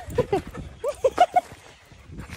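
Husky giving short, excited yips and whines: two quick ones at the start, then a run of four about a second in.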